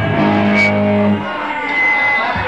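Live band's electric guitars holding a chord after the singing, which rings out and stops about a second in.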